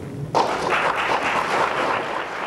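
Audience applause breaking out suddenly about a third of a second in and going on steadily: many hands clapping at once in a hall.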